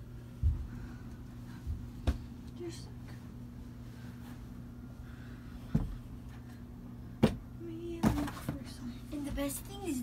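Scattered knocks and bumps in a small, cramped room, the sharpest about seven seconds in, over a low steady hum, with quiet voice sounds near the end.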